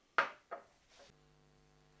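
A beer glass knocking twice against a glass tabletop, one sharp knock followed by a softer one. A faint steady hum follows from about halfway.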